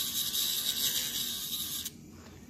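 Electric nail drill with a sanding band blending the seam of a clear acrylic nail tip: a steady high-pitched grinding whine that cuts off suddenly near the end.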